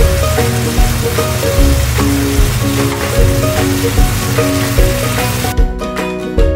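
Sausage and onion sizzling in a frying pan under background music with a steady beat; the sizzle cuts off suddenly near the end, leaving only the music.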